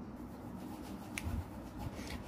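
Black colour pencil tracing lines on paper, a faint scratchy stroking, with one sharp click about a second in.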